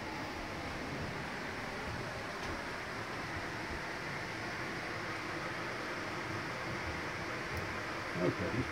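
Steady, even background hiss of outdoor ambience, with no distinct sound events.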